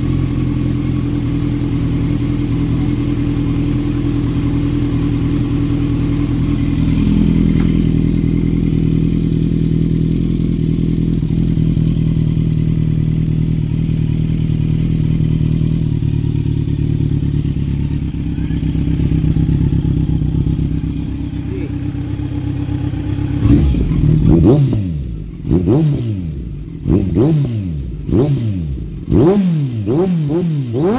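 Kawasaki Z900's inline-four engine idling steadily through an SC Project slip-on exhaust. In the last seven seconds or so it is revved in a string of quick throttle blips, each rising and falling in pitch.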